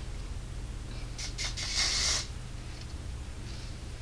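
Kenra dry oil control hair spray being sprayed onto hair: a few short hisses about a second in, then a longer hiss of about half a second.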